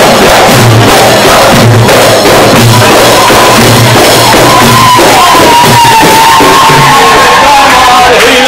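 A live band of frame drums and hand drums pounding out a steady beat about once a second. About three seconds in, a long, slightly wavering high note is held over the drumming.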